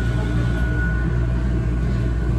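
Whole-body cryotherapy cabin running at about minus 165 degrees: a steady low hum and rumble with a thin, steady high whine over it.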